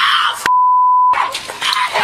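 A censor bleep: one steady, high pure-tone beep of about two-thirds of a second, cutting out all other sound, about half a second in. Noisy body-camera audio is heard before and after it.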